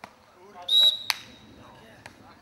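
A referee's whistle blown in one short blast, followed shortly after by a single sharp knock.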